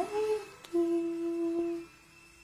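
A person humming: a note that slides up and holds briefly, a short break, then one steady held note of about a second.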